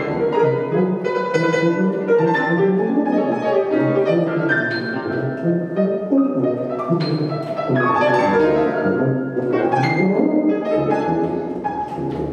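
Free-improvised avant-jazz from a grand piano, a tuba and an electric guitar playing together: a dense, unbroken tangle of short, shifting notes with frequent plucked and struck attacks.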